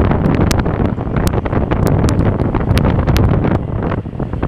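Heavy wind buffeting on the microphone from riding along a street in an open vehicle, with a low rumble of the ride underneath and frequent sharp pops from gusts hitting the mic.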